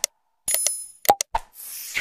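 Sound effects of an animated subscribe reminder: short clicks, a bright bell-like ding about half a second in, two more clicks just after one second, then a brief whooshing rush of noise near the end.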